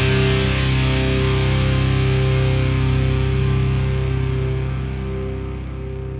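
The final distorted electric guitar chord of a nu metal song, left ringing and slowly fading out.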